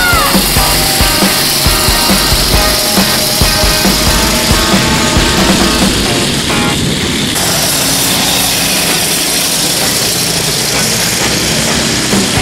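Loud rock music.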